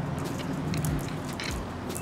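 Footsteps on a concrete sidewalk and asphalt, a few short gritty steps about two-thirds of a second apart, over a low steady hum.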